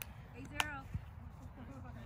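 Faint, scattered voices of players on a grass court in a lull between rallies, over a steady low rumble, with one short sharp tap about half a second in.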